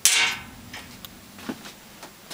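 A metal object clanks once, with a short ring that dies away within about half a second, followed by a few faint knocks as workshop items are handled.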